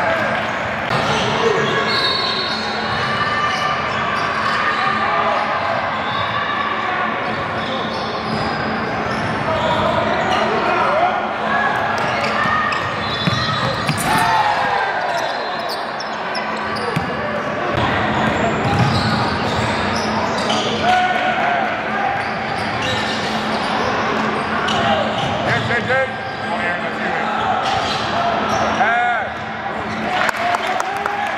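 Live sound of a basketball game in a large gym: the ball bouncing on the hardwood court and sneakers squeaking, under a steady, echoing chatter of players' and spectators' voices.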